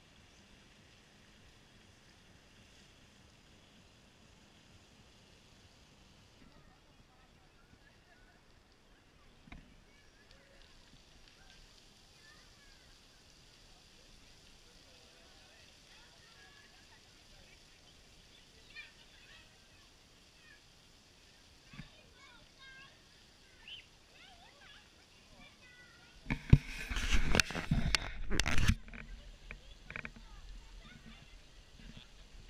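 Faint outdoor ambience of distant voices over a soft hiss of splashing fountain water. Near the end, a loud burst of rough noise close to the microphone lasts about two seconds.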